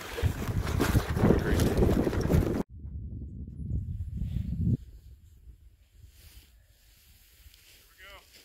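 Wind buffeting a phone microphone, with handling noise, cut off abruptly about two and a half seconds in. A lower wind rumble follows and dies away about halfway through, leaving faint outdoor quiet.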